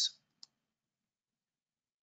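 A single faint mouse click about half a second in, advancing a presentation slide, in otherwise near silence; the end of a spoken word trails off at the very start.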